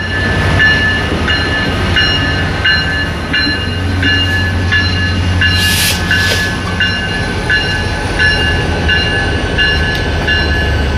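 Ferromex diesel freight train passing close by: the locomotive engine runs with a low rumble under the rolling of the cars, while the locomotive bell rings steadily, about one strike every 0.7 seconds. A short hiss of air comes about six seconds in, as the locomotive goes past.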